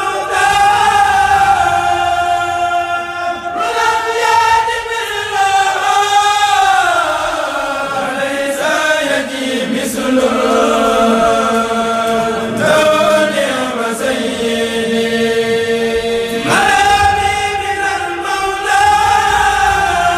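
A kourel of men chanting a Mouride qasida in unison without instruments: long held notes that slide between pitches in melismatic phrases, a new phrase starting every few seconds.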